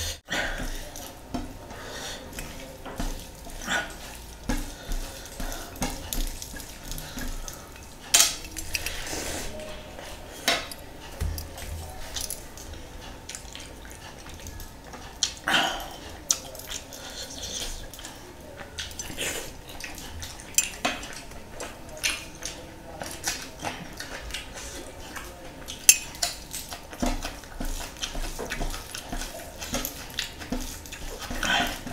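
Close-up eating sounds: fingers scooping rice and fish curry from ceramic plates, with irregular clinks of metal rings against the plates, and chewing.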